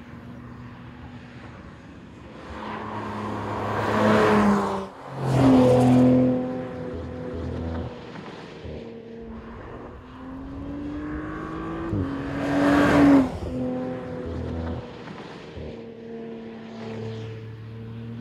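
Audi RS 4 Avant Competition Plus's twin-turbo V6 with the RS sports exhaust plus, driven hard on a circuit: the engine note climbs in pitch and drops sharply at each upshift. It swells loudest twice, about a quarter of the way in and again past the middle, as the car comes by close.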